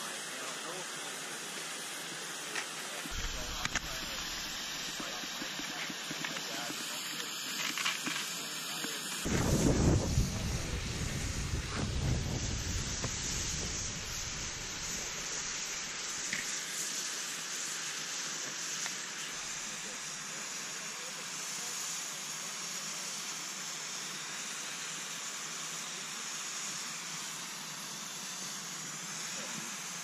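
Steady outdoor hiss on a body-worn microphone, with a low rumble of wind buffeting the microphone about nine seconds in, lasting a few seconds.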